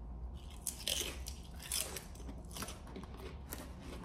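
Crunching of a potato chip topped with pickled pig lip being bitten and chewed, in a run of irregular crunches that are loudest about a second in and again just before two seconds.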